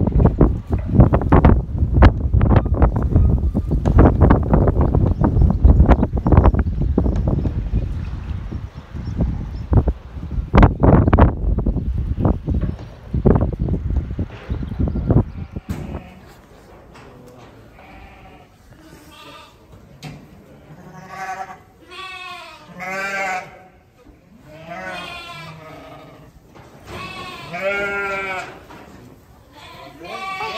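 A livestock lorry pulling away with a loud low rumble and scattered knocks. It cuts off about halfway through, and sheep begin bleating, about half a dozen calls over the second half.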